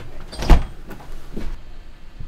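A door shutting with a single heavy thud, then a lighter knock about a second later.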